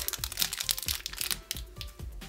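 Thin plastic blind bag crinkling and tearing in the fingers as it is pulled open, a rapid run of crackles that thins out after about a second; faint background music underneath.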